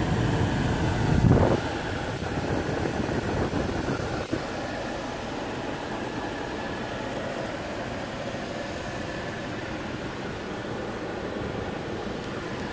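2017 Honda Pilot's V6 idling, heard steadily from inside the cabin along with the climate fan blowing. A brief low bump about a second in and a faint click near four seconds.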